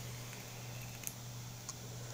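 A long, quiet draw on an electronic vape mod: a faint steady airy hiss over a low hum, with a couple of small clicks.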